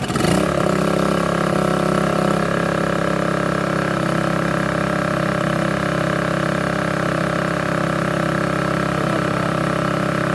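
Portable petrol generator pull-started, catching at once and settling into a steady run, warming up on petrol.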